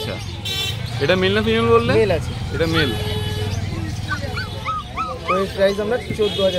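A German Shepherd puppy whimpering: a run of short, high rising-and-falling whines, about four a second, a little past the middle. Voices and a steady low traffic rumble carry on underneath.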